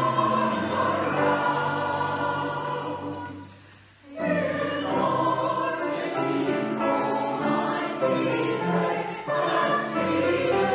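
Mixed SAB choir of sopranos, altos and baritones singing a carol. A phrase dies away about four seconds in, and the choir comes back in full voice a moment later.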